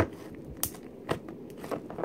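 Glitter slime being squeezed and folded by hand, giving a sharp sticky pop about every half second as air pockets burst.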